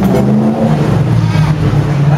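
A motor vehicle's engine running close by in street traffic: a steady low drone that shifts slightly in pitch.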